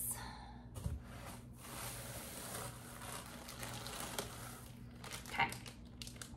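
Packaging rustling and crinkling as a wax melt is picked out of the box, with a few light clicks, for about four seconds.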